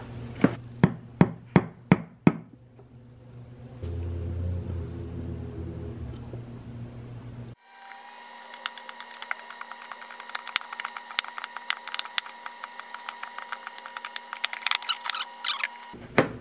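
About six sharp knocks on wood in quick succession, then a steady hum with many rapid light clicks as a screw is driven into a pine frame with a hand screwdriver.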